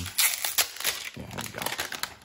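Thin clear plastic protective wrap crinkling and crackling in a rapid run of small crackles as it is pulled off a smartphone by hand.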